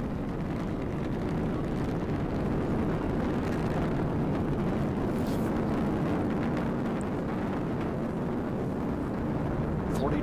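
Atlas V rocket's RD-180 first-stage engine running during ascent, heard as a steady low rumble, about half a minute after liftoff.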